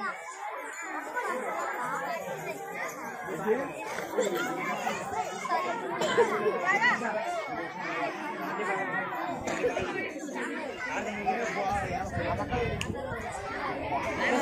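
Crowd chatter: many adults and children talking at once, the voices overlapping.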